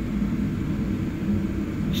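Steady low machine hum with no change or other event.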